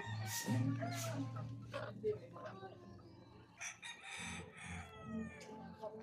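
A rooster crows once, starting about three and a half seconds in, its call falling away at the end. Before it, over the first two seconds, there is a low steady hum and a few brief scratchy rustles.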